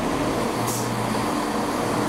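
ScotRail Class 170 Turbostar diesel multiple unit moving slowly through the platform, its underfloor diesel engines giving a steady hum. A short hiss of air sounds about 0.7 s in.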